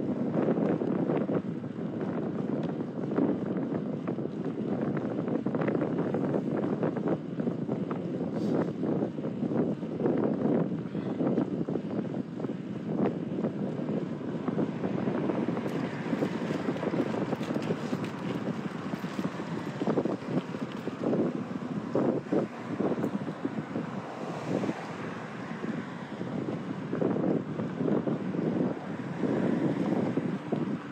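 Wind buffeting a phone's microphone while cycling along a road: a continuous rushing rumble with gusty flutters, more broken up in the second half.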